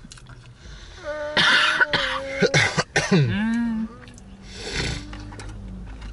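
A person coughing and clearing the throat in a run of loud bursts over about two seconds, followed by a short voiced sound and one softer cough near the end.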